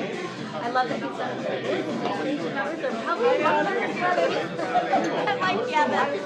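Several people talking at once in a room, an overlapping background conversation with no single clear voice.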